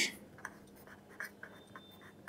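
Pen writing on paper: a few faint, short scratching strokes.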